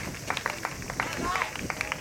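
Open-air tennis venue background: faint distant voices with many irregular sharp clicks and a few short chirps.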